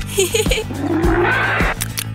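Background cartoon music with a steady beat. Over it come a few short high vocal chirps, then about a second of a rising, rasping creature-like cartoon sound that stops shortly before the end.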